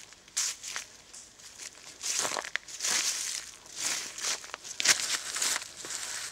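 Footsteps crunching through dead leaves and twigs on a woodland path: an uneven series of rustling crunches.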